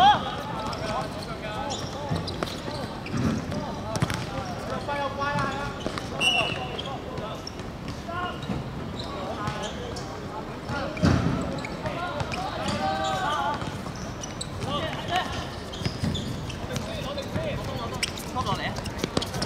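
Footballers shouting and calling to each other across the pitch, with occasional thuds of the ball being kicked. The loudest bursts come right at the start and about eleven seconds in.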